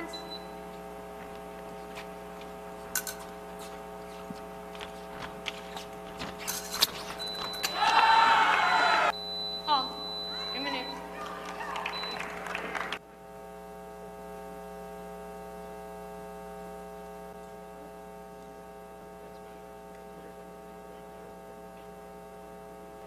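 Steady electrical mains hum with even harmonics, with scattered clicks and a louder stretch of mixed noise and faint voices about halfway through that cuts off suddenly.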